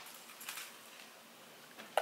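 Faint handling of a small hand-sanitizer bottle and its plastic holder: a click at the start, soft rubbing and small knocks, and another click near the end, in a quiet room.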